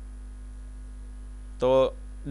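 Steady low electrical hum under everything, with one short spoken word near the end.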